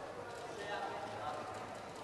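Indistinct background voices, not close to the microphone, with some light clicking mixed in.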